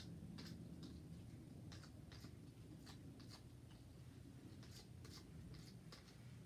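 Sanding sponge rubbed lightly back and forth over a plastic outlet cover plate, scuffing its surface before painting: faint scratchy strokes, roughly two a second.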